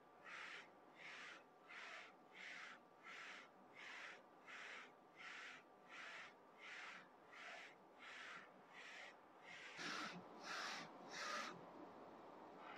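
Print-head carriage of a Focus Combo Jet A3 UV flatbed printer shuttling back and forth during a calibration print, with a faint whirring swish on each pass, about three passes every two seconds. The last few passes near the end are a little louder.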